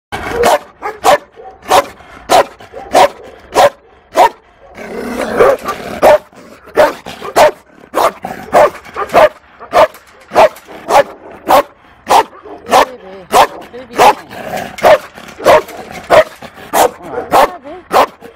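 A Belgian Malinois barking repeatedly through a kennel fence, one sharp bark about every half second, with a brief break about four seconds in. The dog is one the uploader labels as fearful.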